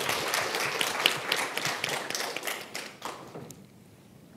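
Audience applauding, a dense patter of many hands clapping that thins out and dies away about three seconds in.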